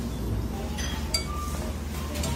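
Tableware clinking, with a few short ringing clinks about a second in, the last one sharp.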